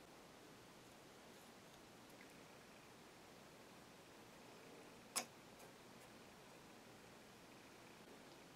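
Near silence, with one sharp click about five seconds in and a faint tick just after, from small objects being handled on a tabletop.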